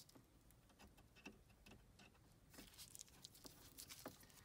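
Near silence with faint, scattered clicks and ticks: a cable plug being handled and pushed into its socket on the back of a car stereo head unit.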